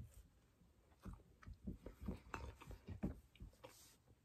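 Faint chewing of a mouthful of buttered Pop-Tart: a brief bite at the start, then a run of short, irregular crunches from about a second in.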